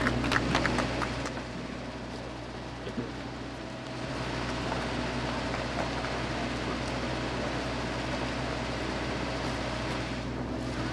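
Steady low mechanical hum under an even hiss, with a few clicks in the first second and a single knock about three seconds in.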